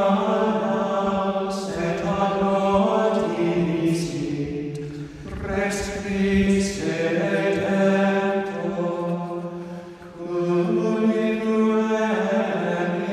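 Slow sacred chant sung by voices on long held notes, moving in phrases with short breaks between them.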